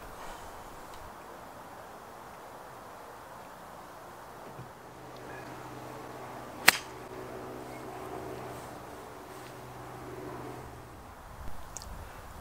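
A single sharp click of a golf club striking the ball, a little past halfway through, over a faint, low, steady hum in the background.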